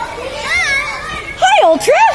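Young schoolboys' voices at play, chattering and calling out in high voices, with loud cries that slide up and down in pitch in the second half.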